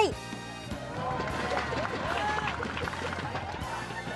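Background music with distant voices of spectators shouting and calling over it.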